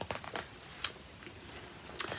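Handling noise: a few short, soft rustles and light clicks, bunched in the first second, then a faint rustle near the end.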